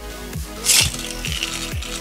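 A Beyblade Burst ripcord launcher's cord pulled once in a quick zip about two-thirds of a second in, launching the top, over background music with a steady beat.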